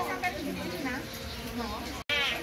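Women's voices chatting quietly in the background, with a faint steady hum underneath.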